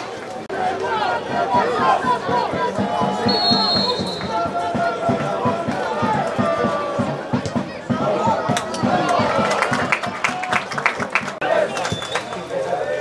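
Crowd and players' voices at a small football ground, shouting and chanting, with no clear words. A quick run of sharp clicks comes in the last few seconds.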